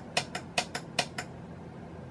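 Front-panel toggle switch on an Altair 8800 replica clicking as it is flicked to EXAMINE NEXT, about four sharp clicks in the first second and a quarter. Each flick steps the address on to the next memory location.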